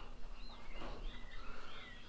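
Faint bird chirps in the background: a few short calls that rise and fall in pitch.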